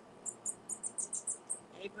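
Small birds chirping: a quick run of about eight short, high chirps over a second and a half.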